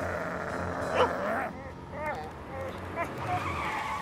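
Cartoon sound effect of a van's tyres screeching as it skids and brakes hard, loudest about a second in.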